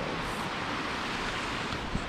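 Steady rushing of a mountain stream's water.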